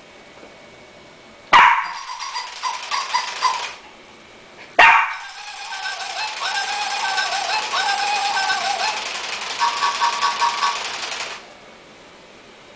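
Tekno robot dog toy giving off electronic sounds from its speaker in two bouts, a short one about a second and a half in and a longer one from about five seconds in until near the end, made of stepped beeping tones and rapid pulsing.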